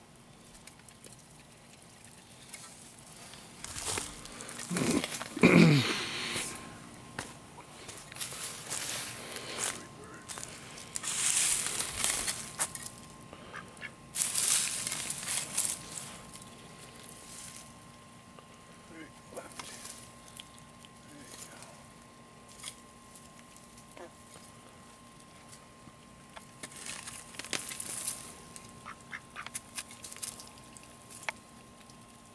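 Pekin ducks quacking, loudest about five seconds in, with bursts of rustling in dry leaves and loose soil.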